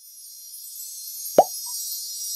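A single short cartoon-style 'plop' sound effect partway through, a quick upward-sliding blip followed by a tiny high tone, over a faint high hiss.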